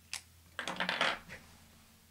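A sharp click, then a quick cluster of clicks and taps from hands picking up a pen and settling it and the card on the table.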